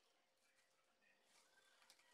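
Near silence, with no audible plastic rustle or other event.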